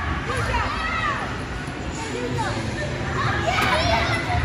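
Children's voices calling and shouting over the steady din of a crowded indoor play hall, with a constant low rumble underneath.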